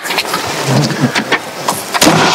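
Rustling and shuffling as a person settles into a roadster's seat, clothing and paper rubbing and brushing.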